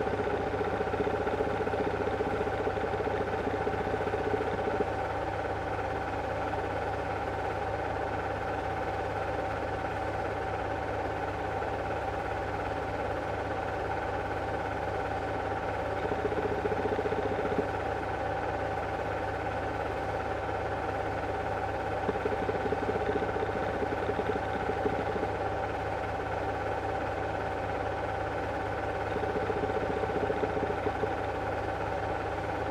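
8mm film projector running: a steady motor and fan hum with a constant whine, and a lower drone that fades out about five seconds in and returns briefly past the middle.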